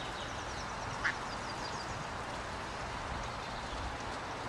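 A mallard hen quacks once, briefly, about a second in, over a steady background hiss, with faint high chirps from small birds.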